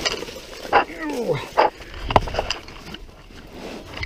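A low wordless vocal sound, a groan falling in pitch about a second in, among knocks and rustling from the camera being moved around.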